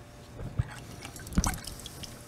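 Engine coolant draining from the open drain of a BMW 335i's stock radiator, dripping and splashing, with two louder plops about half a second and a second and a half in.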